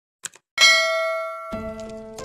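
Sound effect of a subscribe-button animation: two quick mouse clicks, then a bright bell ding that rings out and fades. A second, lower chime comes in about a second and a half in.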